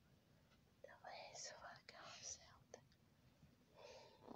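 Very faint whispering, in two short spells about a second and two seconds in.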